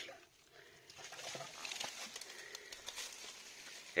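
Faint rustling and light crackling of dry leaves and undergrowth disturbed by a person moving among them, with small scattered ticks.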